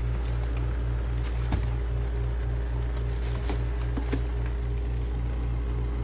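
A steady low mechanical hum that pulses about four times a second, with a few light knocks as an empty cardboard box and the red plastic vacuum body are handled.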